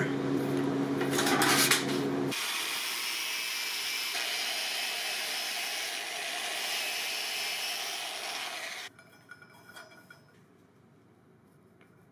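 A steady hum with a few knocks, then from about two seconds in a power grinder runs with an even, steady grind for about six seconds, taking metal off a brass ring and steel socket so the ring will slide onto the haft. It then stops, leaving near silence with faint ticks.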